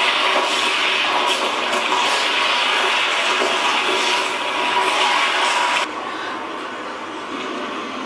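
Loud steady rushing noise from the soundtrack of a projected film. It drops suddenly to a quieter, lower rush about six seconds in, where the footage cuts to another shot.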